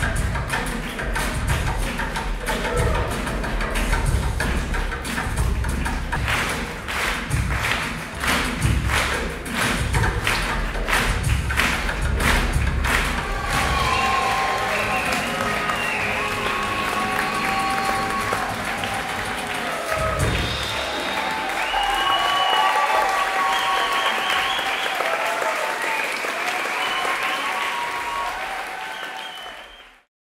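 A live band plays a fast number with a heavy, steady beat and strong bass, which stops about a third of the way in. Audience applause and cheering with shouts follow, fading out at the very end.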